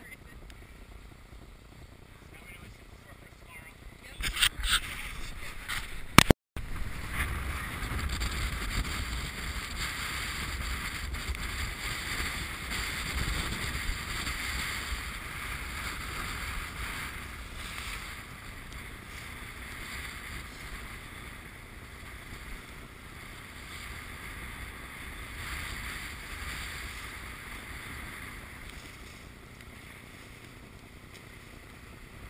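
Wind on the microphone and water rushing along the hull of a sailboat heeled over and moving fast under sail, swelling from about seven seconds in. A few sharp knocks about four seconds in, then a loud click and a brief dropout just after six seconds.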